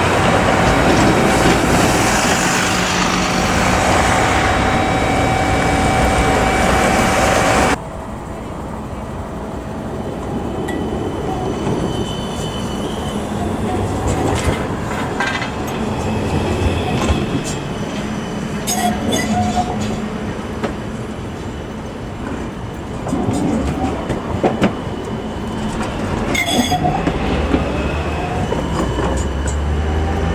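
Road traffic with a city bus passing, cut off abruptly about eight seconds in. Then a low-floor tram runs by close, its wheels clicking on the rails, and near the end a tram's electric motors give a rising whine as it accelerates.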